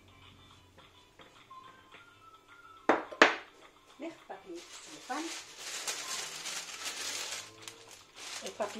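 Two sharp knocks about three seconds in, then a sheet of baking parchment crinkling and rustling as it is handled for a couple of seconds.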